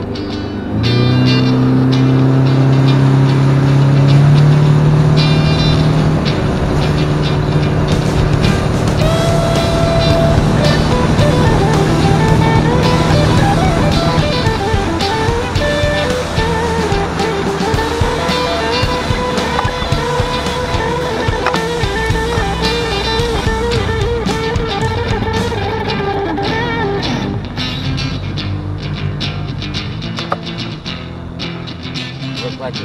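A boat's outboard motor running at speed, with guitar-led background music laid over it.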